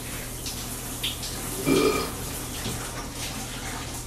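Shower running behind a drawn curtain: a steady hiss of water spray in a small tiled bathroom, with one brief louder sound a little under two seconds in.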